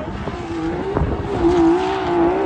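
Off-road buggy engine held at high revs under full load as it climbs a steep dirt slope, its pitch wavering slightly while the tyres dig and fling dirt. There is a sharp knock about a second in, and the engine grows louder toward the end.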